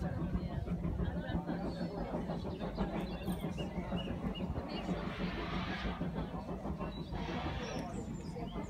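Indistinct conversation of several people talking at once, voices overlapping with no clear words. Two short stretches of hissing noise come past the middle.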